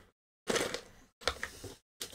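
Small plastic miniature toys being pushed into a clear plastic cylinder container: two short bursts of clicks and rustling, each beginning with a sharp click and cutting off abruptly.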